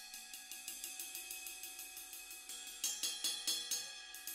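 Zultan Dark Matter ride cymbal struck with a drumstick in a steady, quick pattern of about seven strokes a second, its ringing wash sustaining underneath. A few louder strokes come about three seconds in.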